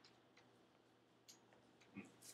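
Near silence: faint room tone with a few short, soft clicks spread through it, the last one near the end a little louder.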